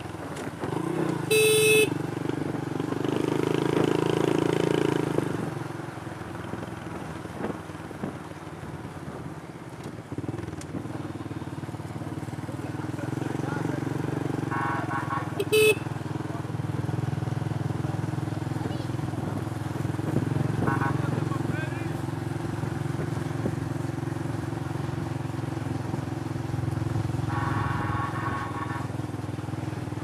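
Small motorbike engines running steadily on the move, with two short horn toots, one about a second and a half in and another about fifteen seconds in.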